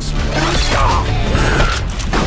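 A loud creaking, screeching mechanical sound effect over a low music drone.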